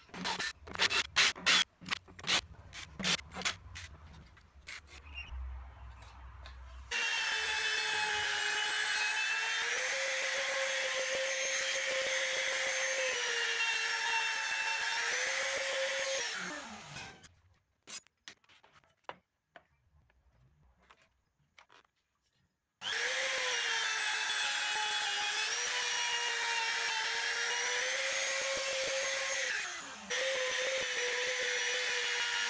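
A handheld trim router runs at high speed, cutting a groove into the particleboard sled base. Its whine dips in pitch and recovers as the bit is loaded. It stops about 17 seconds in and starts again about 6 seconds later. Before it, in the first few seconds, there is a run of sharp knocks and short bursts from the drill and the boards.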